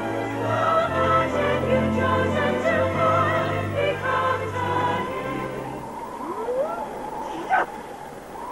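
Choir singing over orchestral music with held bass notes. About five seconds in the music falls away to a quieter stretch, with a couple of rising pitch glides and a short sharp sound near the end.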